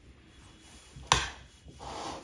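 Metal spoon scooping and scraping diced avocado salsa onto a plate, with one sharp clink of the spoon on the plate about a second in, then a soft wet scrape near the end.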